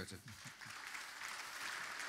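Audience applause: a steady clapping that begins just after the start and builds slightly.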